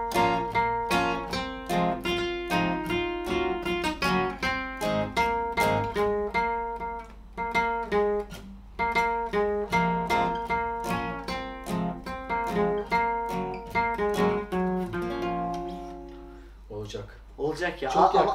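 Two acoustic guitars playing together: one strums a steady chord rhythm while the other picks a single-note melody line over it, a beginner's practice run at the song. The playing breaks off briefly about halfway through, then dies away near the end, when voices come in.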